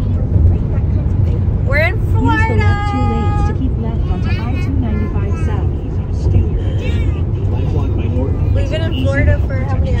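Steady low road rumble inside a moving car's cabin, with voices over it. About two seconds in, a high voice slides up and holds a long sung note for a second or so.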